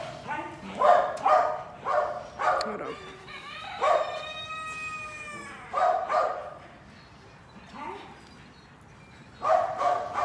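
A dog barking repeatedly in short calls, with one long drawn-out cry about four seconds in and a couple more barks near six seconds; after that it goes quieter.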